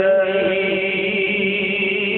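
A man's voice reciting the Quran in melodic qirat style, drawing out a long held note with a wavering ornament.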